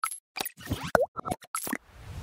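Cartoon-style sound effects for an animated logo end screen: a quick run of about eight short pops and plops, with a springy dip-and-rise in pitch about halfway through.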